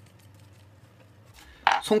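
Faint plastic clicking and rubbing as the threaded cap is unscrewed from a grey plastic PB push-fit cross tee. A man's voice starts near the end.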